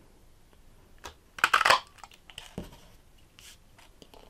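Handheld Stampin' Up! 2-1/4 inch circle punch pressed through black cardstock: a short crunching snap, about one and a half seconds in, as it cuts out a circle frame. A few faint clicks and paper rustles come before and after it.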